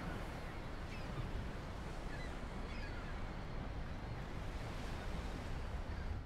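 Outdoor ambience: steady wind noise on the microphone, heaviest in the lows, with a few faint high chirps.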